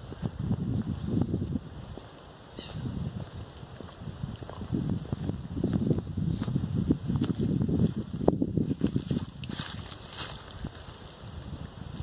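Wind buffeting a phone's microphone in irregular low rumbles, with footsteps through grass and dry leaves and a few brief crisp rustles near the end.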